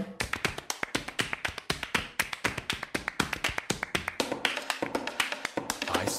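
Body percussion music: a rapid, even pattern of sharp taps, claps and snaps, several hits a second, with pitched drums coming back in during the last two seconds.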